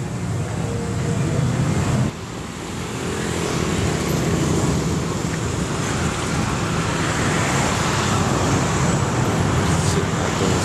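Road traffic noise: a steady wash of passing vehicles. It drops suddenly about two seconds in, then builds back up and stays steady.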